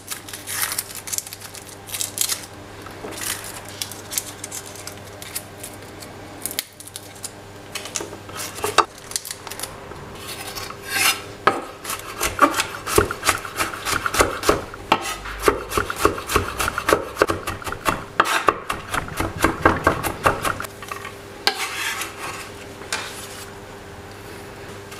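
Chef's knife cutting garlic cloves on a wooden chopping board: scattered taps and handling at first, then a run of rapid chopping strokes, several a second, in the second half, easing off near the end.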